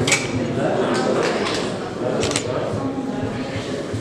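Indistinct voices in a large hall, with a few sharp clicks or knocks: near the start, about a second in, and again a little past two seconds.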